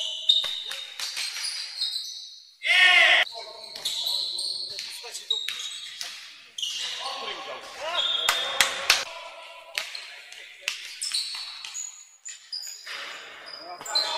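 Basketball being dribbled and bouncing on a hardwood court in a large, echoing sports hall, with short high sneaker squeaks and players calling out. A loud shout stands out about three seconds in.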